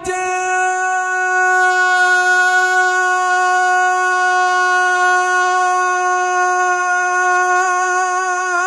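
A man's singing voice holds one long, steady note through a stage microphone and PA during a naat recitation, with no break for breath.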